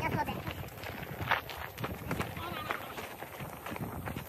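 Irregular crunching footsteps on loose gravel as a wheelbarrow is pushed across a gravel lot, with indistinct voices.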